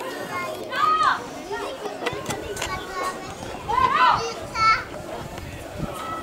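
Children's voices shouting and calling out on a football pitch: short, high-pitched calls about a second in and again around four seconds in, with a quick run of calls just after, over general outdoor murmur.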